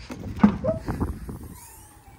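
A Vauxhall Corsa D's tailgate being opened by hand: a sharp click of the latch release about half a second in, a few lighter knocks as the hatch lifts, then fading away.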